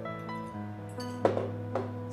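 Background music of steady held notes, with one sharp clink of kitchenware a little past halfway and a fainter knock shortly after.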